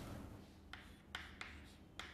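Chalk writing on a blackboard: a few faint, short strokes and taps, spaced about half a second apart.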